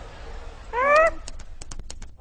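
A short squeaky cry rising in pitch, the cartoon insect's voice, followed by a quick run of about seven sharp clicks.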